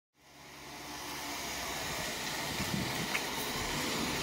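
Steady outdoor background noise with a low rumble, fading in from silence over the first second and then holding steady.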